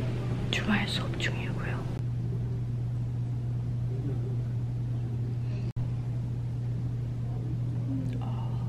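A steady low hum of a quiet classroom, with a soft whispered voice in the first couple of seconds. The sound cuts out for an instant near six seconds.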